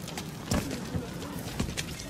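Street ambience from a film soundtrack: a few sharp knocks at uneven intervals over faint background voices.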